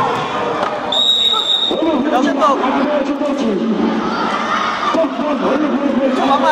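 Children's voices shouting and calling in a reverberant sports hall, with a short, steady, high whistle blast about a second in, likely the referee's whistle, and scattered knocks of the ball on the court.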